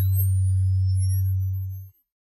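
Synthesized sound effect of a TV channel ident: a loud, steady deep hum under thin high tones gliding slowly upward, with a couple of falling sweeps. The hum cuts off just before the end.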